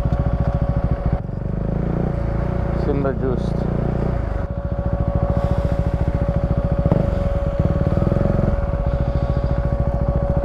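Husqvarna 401's single-cylinder engine running as the motorcycle is ridden, heavier under throttle from about one second in until about four and a half seconds, then settling to steady pulses. A steady high whine runs along with the engine.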